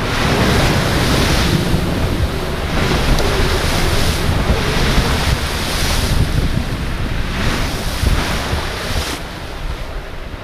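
Chevrolet Silverado driving along a muddy trail, heard through a camera mounted on the truck as loud rushing noise. The noise swells and eases every second or two over a low rumble, and drops off near the end.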